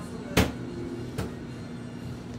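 Hands handling a cardboard shoebox: a sharp knock about half a second in and a lighter one just over a second in, over a steady low hum.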